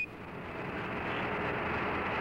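Steady radio hiss on the Apollo 14 air-to-ground voice link from the lunar surface: an open channel with no one talking.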